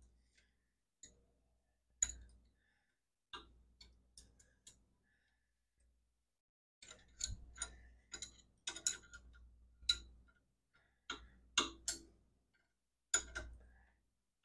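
Two 9/16-inch steel wrenches clicking and clinking against the jam nuts on a shift-linkage rod as they are tightened against each other. The clicks come singly at first, then more often from about halfway through.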